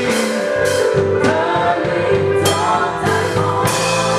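Live gospel worship music: a male singer sings into a microphone over a band with a drum kit, and three sharp drum and cymbal hits punctuate the song.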